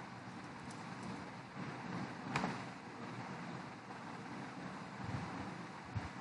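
Steady background hiss and room noise picked up by a computer microphone, with a few faint keyboard and mouse clicks, the clearest about two seconds in.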